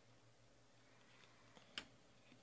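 Near silence with faint ticks of a stack of trading cards being picked up and handled, and one short sharper click near the end.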